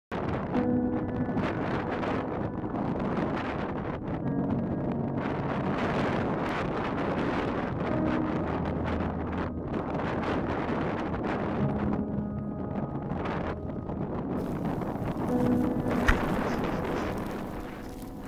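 Strong wind blowing across the microphone over open snow, a steady rough rush, with one sharp knock near the end.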